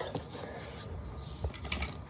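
Quiet handling noise from a cardboard box being turned in the hands: faint rubbing and a few soft, scattered clicks over a low background hush.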